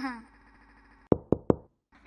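Three sharp knocks in quick succession, about a fifth of a second apart, just after the middle, following the tail end of a voice.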